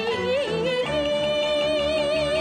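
Female Cantonese opera singer, sung in the high female style, gliding up and then holding a long high note with wide vibrato about a second in, over the instrumental accompaniment.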